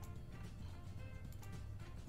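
Slot game's looping background music with a steady bass line and held tones, with a few short clicks as the reels cascade and new symbols drop in.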